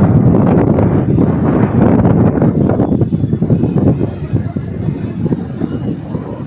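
Loud, fluctuating rumble of wind buffeting an outdoor microphone, with indistinct voices underneath.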